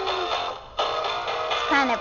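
Animatronic singing fish toy playing its recorded song through its small speaker, with a short break about half a second in before the music resumes.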